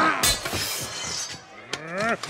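A man's loud bellowing yell breaks off as a heavy weapon strike lands about a quarter second in. Another rising yell or grunt follows near the end, during a spear-against-armour fight.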